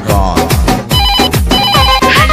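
A telephone ringing comes in about halfway through, as a series of thin high tones laid over a song's backing music with a steady drum beat.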